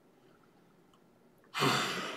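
Near silence, then about one and a half seconds in, a man's audible sigh.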